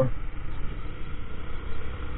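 Honda Grazia 125 scooter's single-cylinder engine running steadily at low road speed, under a low, even rumble of engine and road noise.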